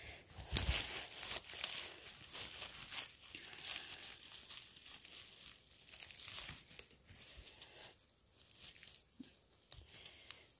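Rustling and crackling of moss, twigs and dry forest litter as a gloved hand pulls and picks wild mushrooms, with many small irregular crackles that thin out after about seven seconds.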